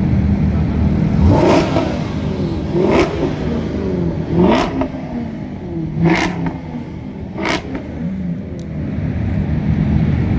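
A parked supercar's engine idling and being revved in five short blips, about one every second and a half, each one with a sharp crack from the exhaust.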